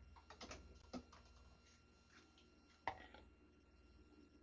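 Faint scattered clicks and knocks of objects being handled, the sharpest nearly three seconds in, over a low steady hum.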